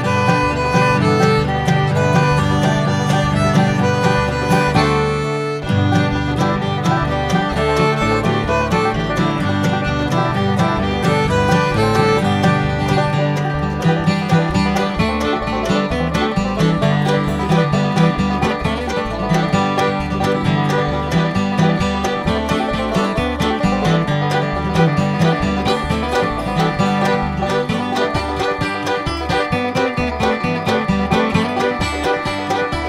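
Upbeat instrumental background music in a bluegrass style, with plucked strings and fiddle, playing continuously with a brief break about five seconds in.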